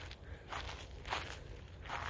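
Footsteps on thin snow over wood-chip mulch: a few soft, faint crunching steps.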